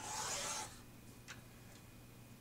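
Sliding paper trimmer cutting through a sheet of paper: one short rasp of the blade, under a second long, followed a little later by a light click.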